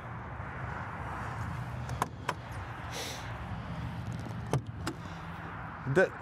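A steady low background hum, with a few sharp clicks and knocks as a motorhome's lower storage-bay doors are unlatched and swung open.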